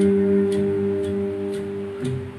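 Electric guitar holding one sustained note that slowly fades.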